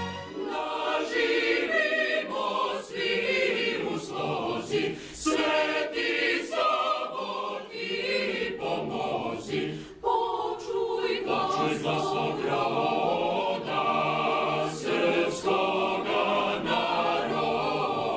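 Mixed choir of women's and men's voices singing unaccompanied, several voices together in sustained sung phrases.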